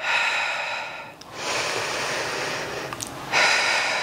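A woman breathing audibly into a close microphone: about three long breaths in and out, each a second or more, paced with the curl and extend of single-arm bicep curls on a reformer strap.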